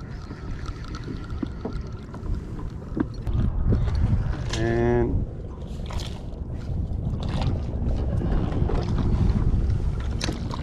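Wind buffeting the microphone with a low rumble, growing louder a few seconds in. About halfway there is a brief hummed voice sound, and a few sharp clicks come later.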